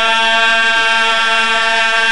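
A man's voice holding one long, steady sung note over a microphone and loudspeaker, a drawn-out vowel in a devotional recitation.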